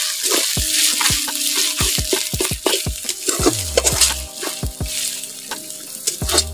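Chopped food frying and sizzling in hot oil in a steel kadhai, with a metal spatula stirring and scraping against the pan in quick, repeated strokes.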